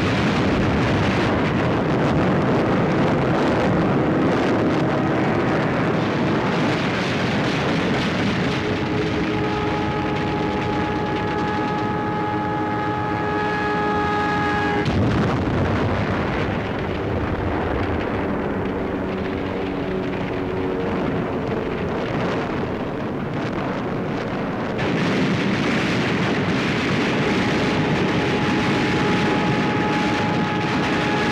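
Dense, continuous battle din of anti-aircraft gunfire, explosions and aircraft engines during an air attack on a carrier, with sustained pitched tones coming and going over it.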